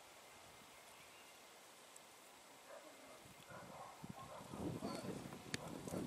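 Quiet outdoor background for about the first half, then a few faint knocks and muffled voices that grow louder toward the end.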